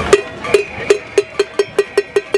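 A metal cooking pot banged as a protest cacerolazo: sharp ringing clangs of one pitch that speed up from about two to about five strikes a second.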